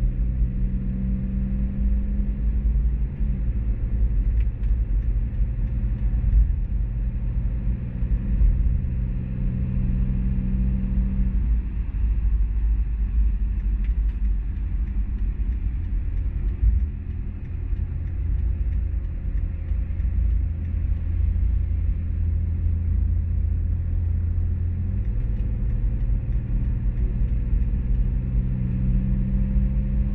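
Cabin noise of a 2013 BMW X5 35d diesel cruising at highway speed: a steady low rumble of road and drivetrain noise, with a low drone that shifts in pitch a few times.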